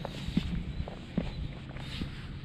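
Footsteps in sneakers climbing steep steps cut into bare rock: four short thuds, about two steps a second, over a steady low rumble.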